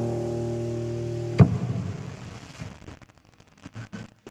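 The song's closing held chord, cut off about a second and a half in by one sharp hit. A short noisy tail fades out after it, with a few faint clicks near the end.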